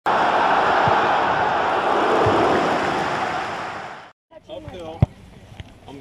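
An intro sound effect: a loud, even rushing noise that fades out about four seconds in. After a brief silence, people start talking outdoors, and there is one sharp thump about a second later.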